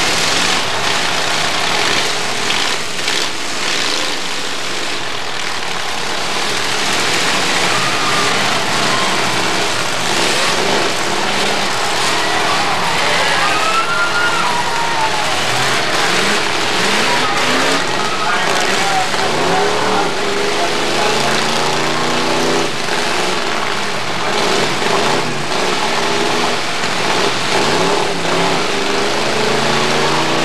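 Demolition derby cars' engines revving up and down over a steady din of engine noise and crowd voices.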